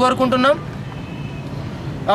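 A man speaks for about half a second, then a steady low hum of road vehicle noise fills the pause.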